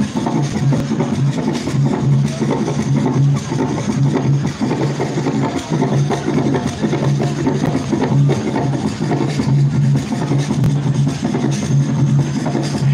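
Drum-led dance music with a steady, low, repeating beat.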